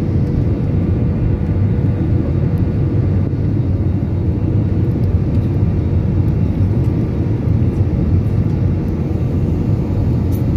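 Steady cabin noise inside an Airbus A320-family jet airliner in flight: a constant low rumble of engines and airflow, with a faint steady hum above it.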